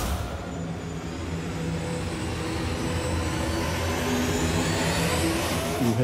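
Dramatic sound-effect swell from a TV serial's background score: a rumbling whoosh with low held tones that slowly builds and cuts off at the end.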